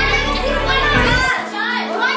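Many schoolchildren talking at once in a classroom, over a background music track whose bass drops out just over a second in.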